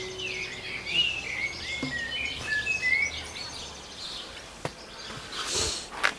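Garden birds chirping and singing, many short, quick calls, while the tenor guitar's last note fades away in the first moment. Near the end comes a sharp click and then a louder rustling of the camera being handled.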